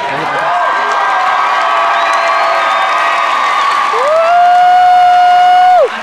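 Crowd of graduates cheering and screaming. From about four seconds in, one long steady high-pitched note close by rises above the crowd as the loudest sound and cuts off just before the end.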